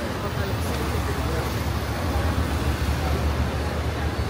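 Street traffic noise: a steady low rumble of vehicles on the road alongside.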